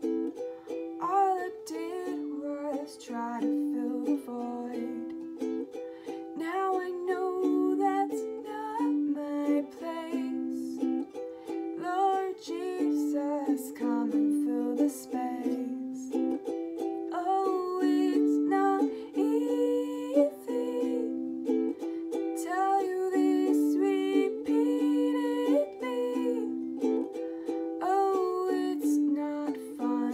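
Ukulele playing chords while a woman sings a slow original song.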